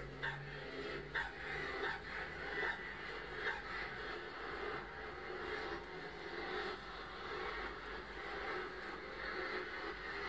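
Small dog barking in a series of short barks, about one a second in the first few seconds, heard through a television's speaker with the room around it.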